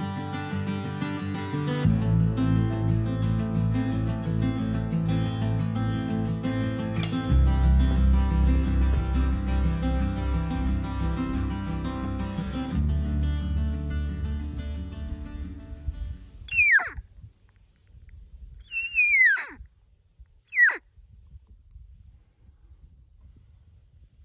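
Acoustic guitar music that fades out, then three high whistled calls from elk, each falling steeply in pitch, the middle one the longest.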